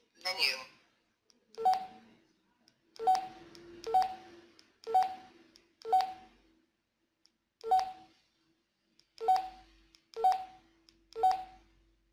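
Key beeps of a Retevis RT5 handheld radio as its menu buttons are pressed one after another, about once a second: each a short click with a beep. A longer, wavering electronic sound comes from the radio at the very start.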